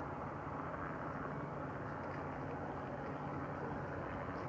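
Steady, distant engine noise of a Beriev A-40 Albatros jet flying boat running on the water, with no breaks or changes in level.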